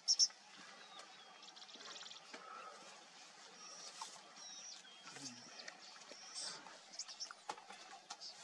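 Wild birds chirping and whistling over faint open-grassland ambience. A loud sharp chirp comes right at the start, and a quick rattling trill about two seconds in, among scattered short whistled notes.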